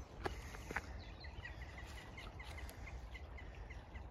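Faint outdoor ambience with a small bird singing a quick run of short high chirps, lasting under two seconds, over a low rumble.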